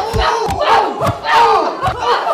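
Punches and kicks landing with several heavy thuds in quick succession, amid yelling from the fighters and a shouting crowd of onlookers.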